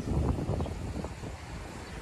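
Outdoor street ambience: a low, steady rumble of wind on the microphone with traffic beneath it.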